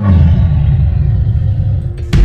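A loud, deep rumble that starts suddenly and holds steady.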